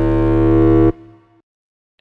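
Serum synthesizer bass patch playing one held note: two sine oscillators pitched above the fundamental and driven through distortion, giving a very distorted but harmonic drum-and-bass bass tone. The note holds steady, cuts off about a second in and fades out briefly.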